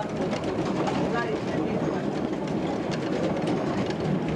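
A train rolling along the track, heard from on board: a steady rumble of wheels on rail with faint clickety-clack.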